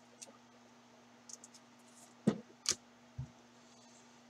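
Trading cards being handled and flipped through by hand: a few soft clicks and taps, with two sharper clicks a little after two seconds in and a dull tap just after three, over a steady faint hum.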